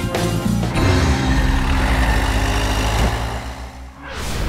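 Theme music breaks off under a motor vehicle engine sound about a second in: an engine revving loudly, then fading away near the end.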